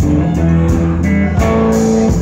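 A live blues-rock band playing with no vocals: a Tramsmash electric guitar plays over a bass guitar, with a steady beat.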